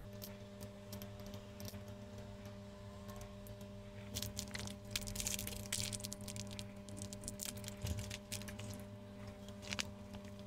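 Small plastic kit parts clicking and rattling as they are handled and fitted together, with a denser spell of rustling and crackling around the middle, over a steady low hum.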